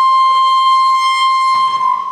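Microphone feedback through a PA system: a loud, steady howl on one high pitch with overtones.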